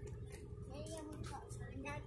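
Faint voices of people talking at a distance, with scattered soft knocks and a steady low rumble.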